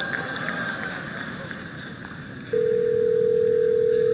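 Telephone ringback tone on an outgoing call: one steady ring lasting about two seconds, starting about halfway through, while the call to the hair salon waits to be answered. Low background hiss comes before it.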